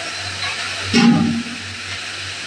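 Large aluminium pot of food boiling hard with a steady hiss. About a second in, a metal utensil knocks the pot and rings briefly.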